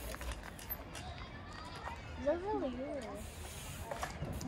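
Trials bike hopping on its back wheel and up onto a metal-topped bench, with a few light knocks and clicks from its tyres and brakes. A short wordless wavering voice sound comes from a person a little past the middle.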